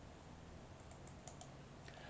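Near silence with a low hum, broken by a few faint computer input clicks in the second half as the slide is advanced to the next page.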